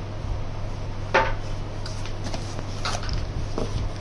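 A handful of light clicks and taps as a microscope eyepiece and its plastic dust cap are handled, over a steady low hum.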